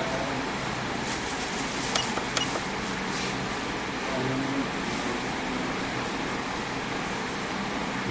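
Steady background noise, a low hum with hiss, with a couple of faint clicks about two seconds in.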